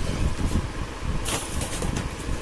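Steady low rumble of background noise. About a second and a half in comes a brief rustle of cardboard saree packaging being handled.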